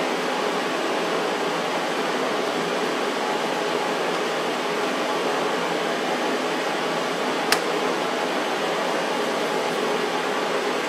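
Steady, even rushing noise, with one sharp click about seven and a half seconds in.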